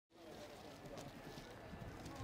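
Faint outdoor ambience: distant voices over a low, steady rumble.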